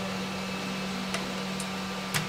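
Steady low hum with an even hiss, like a running fan or small motor, with two faint small clicks in the second half.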